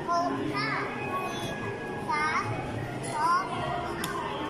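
A child's voice calling out in three short, high, rising cries over the steady background din of a busy arcade.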